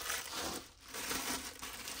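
Clear plastic packaging bag crinkling and rustling as it is handled, with a brief lull about halfway through.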